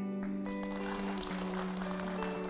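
Studio audience applauding over soft background music with long held notes. The clapping starts a moment in.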